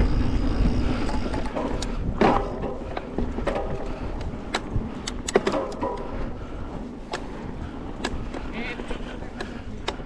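Wind rushing over the microphone and a bike rolling on a dirt trail, with scattered clicks and rattles from the bike over bumps. The wind is loudest at the start and eases off.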